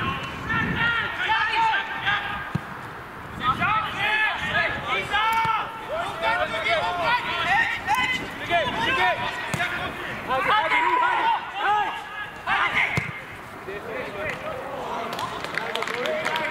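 Footballers' voices shouting calls across the pitch, several at once and overlapping, with a couple of dull thuds of the ball being kicked.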